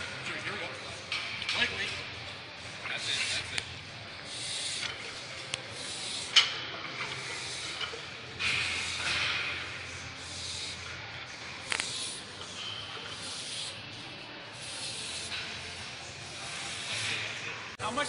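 A weightlifter's forceful hissing breaths, repeated in rough time with the reps of a heavy barbell decline bench press set, with a sharp click about six seconds in and another near twelve seconds.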